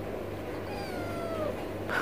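A cat meowing once, a drawn-out call that falls in pitch, over a steady low hum. A short knock follows near the end.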